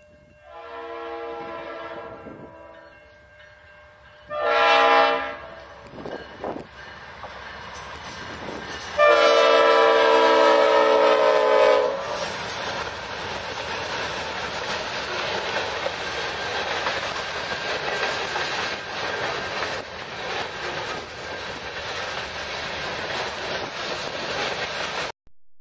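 Leslie RS5T five-chime horn on Norfolk Southern's lead locomotive, blowing for a crossing. First a medium blast, then a short louder one about four seconds in, then a long loud blast about nine seconds in. From about twelve seconds on, the locomotives and freight cars pass close by with a steady rumble and clattering wheels.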